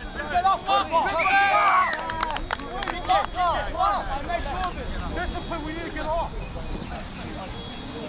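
Several voices shouting and calling over one another, loudest in the first few seconds, with a few sharp clicks about two to three seconds in, then settling into a lower murmur of voices.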